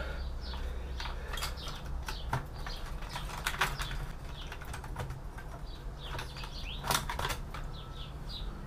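Irregular small clicks and metallic rattles of hands working a graphics card loose from its expansion slot inside a desktop PC's steel case, with a few louder knocks. Birds chirp faintly in the background.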